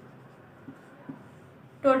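Marker pen writing on a whiteboard: faint scratching strokes and light taps as figures are written and a box is drawn around them. A voice starts speaking near the end.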